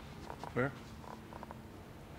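A brief low voice sound, a short hum- or grunt-like utterance, about half a second in, over quiet room tone, followed by a few faint, indistinct voice fragments.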